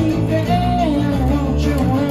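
Two acoustic guitars played live together, with a man singing the melody over them.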